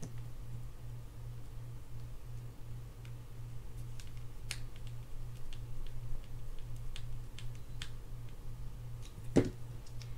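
Light, scattered clicks and ticks of a mini screwdriver and small metal parts against a Shimano FX4000FA spinning reel's body as a screw is driven in to secure a reassembled part, over a steady low hum. A sharper knock comes near the end.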